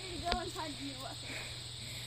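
Faint, distant voice talking during the first second, with one sharp click about a third of a second in.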